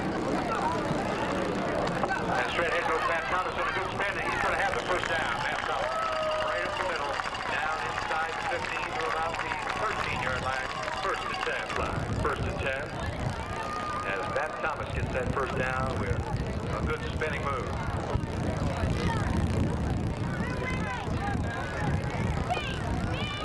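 Overlapping voices of spectators chatting near a camcorder's built-in microphone, no single voice clear, with a low rumble on the microphone from about twelve seconds in.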